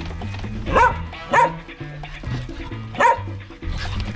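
A dog barks three times, with two short barks close together about a second in and one more about three seconds in, over background music with a steady bass line.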